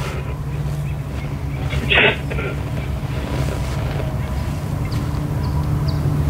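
Ghost-box speaker (a modified spirit-box 'portal') putting out a steady low hum, with one short burst of sound about two seconds in.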